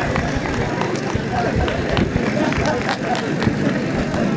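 A man's voice amplified through a microphone and PA system, speaking, with steady outdoor background noise underneath.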